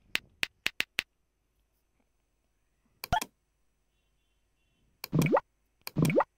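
Computer keyboard keys clicking about six times in quick succession as a short word is typed. A single click follows about three seconds in. Then come two rising 'bloop' sound effects from the Tux Paint drawing program, about a second apart, played as colours are picked from its palette. These bloops are the loudest sounds.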